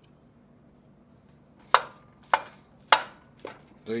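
A kitchen knife knocking against the rim of a heavy enamelled cast-iron Dutch oven to shake off minced garlic: three sharp taps about half a second apart, starting a little under two seconds in, then a fainter fourth.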